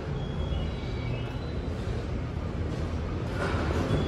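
Steady low rumble of an idling truck engine.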